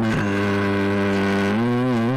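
A man's voice reciting the Quran, holding one long chanted vowel at a steady pitch, with a slight waver in pitch near the end.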